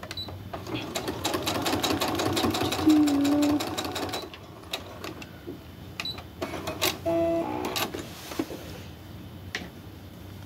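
Brother computerized embroidery-and-sewing machine stitching a fabric scrap onto a quilt block in one fast run of rapid needle ticks lasting about three seconds, then stopping. About seven seconds in, after a front button is pressed, the machine gives a short mechanical whirr.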